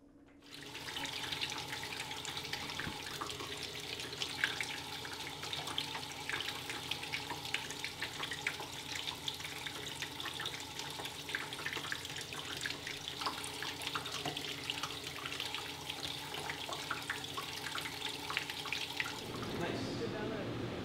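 Water running from a darkroom sink faucet into a wide sink where photographic prints are being washed: a steady splashing that starts about half a second in.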